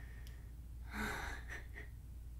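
A woman's soft, breathy gasp about a second in, with a few fainter breaths after it, over a steady low hum.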